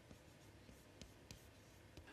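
Near silence, with faint taps and scratches of chalk on a chalkboard as a word is written.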